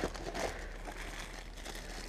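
Clear plastic accessory bags crinkling faintly as they are handled, with a few light crackles.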